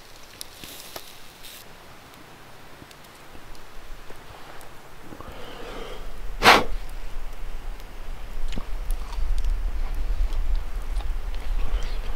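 Campfire coals crackling faintly with scattered small pops and one sharp, loud pop about six and a half seconds in, over a low rumble that builds through the second half.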